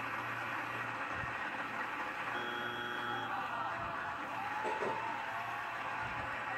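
Game show studio audience and contestants applauding, heard through a TV speaker, with a brief electronic tone for about a second near the middle.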